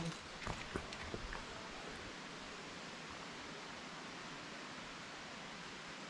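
A few light knocks and rustles of the camera being handled and set down in the first second or so, then a steady, even outdoor hiss with nothing else standing out.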